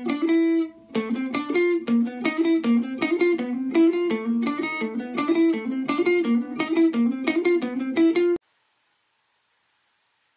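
Les Paul-style electric guitar played as a left-hand finger exercise: two-finger combinations on the third and fourth strings in seventh position, a steady run of single picked notes alternating between a lower and a higher pitch. The playing cuts off suddenly a little past eight seconds in.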